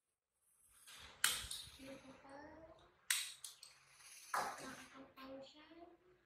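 Three sharp clicks, about a second in, three seconds in and four and a half seconds in, each followed by short vocal sounds that rise in pitch.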